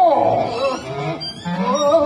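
Drawn-out, wavering vocal cries from an actor on stage, sliding up and down in pitch like wails.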